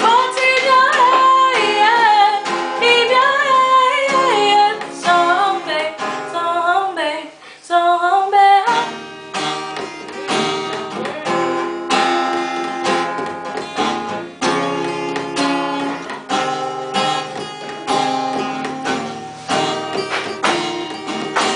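A woman singing to her own acoustic guitar strumming; the singing stops about eight seconds in and the guitar strums on alone.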